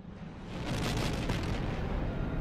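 Sci-fi sound effect of three Republic warships dropping out of hyperspace: a deep, noisy rumbling rush that swells up about half a second in and holds.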